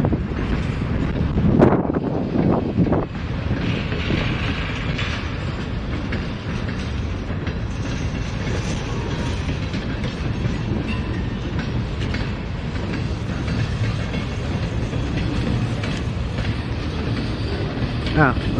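Freight train of covered hopper cars rolling past close by with a steady rumble, a little louder for a moment about two seconds in.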